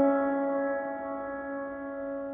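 Slow background piano music: one held chord that rings on and slowly fades.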